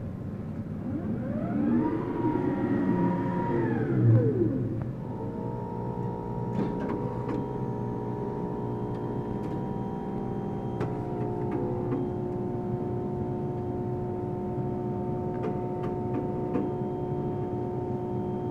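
Mimaki UJF-6042 UV flatbed printer running: a whine that rises and then falls in pitch over about four seconds and ends in a thump, then a steady hum of several tones with occasional clicks.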